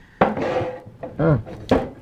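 Short bursts of voice and breath after downing a shot of liquor, including a brief "yeah".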